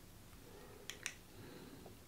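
Two faint, quick plastic clicks about a second in as a fingertip pulse oximeter is handled on a finger, otherwise near silence.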